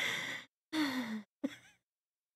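Stifled laughter into a close microphone: three breathy exhales, the middle one voiced and falling in pitch like a sigh.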